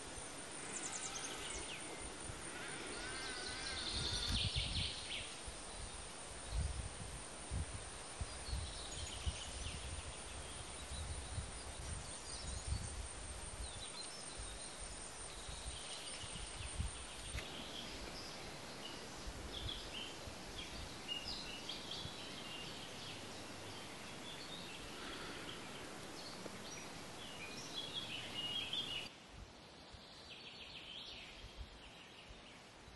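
Outdoor woodland ambience with small birds calling and chirping now and then, and a low irregular rumble in the first half. The background noise changes abruptly about halfway through and again near the end.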